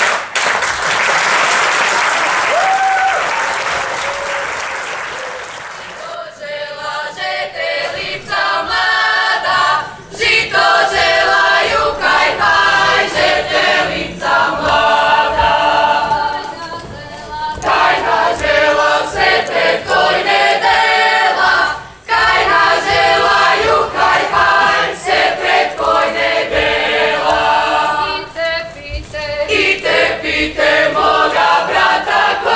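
Audience applause that fades away over the first six seconds, then a group of folk ensemble singers singing unaccompanied in phrases, with short breaths between them.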